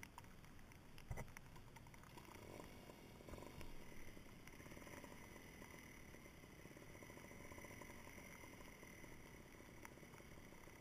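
Near silence: faint handling rustles with a single knock about a second in.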